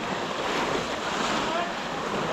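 Steady sloshing and splashing of pond water churned by many people wading waist-deep, with faint distant shouting over it.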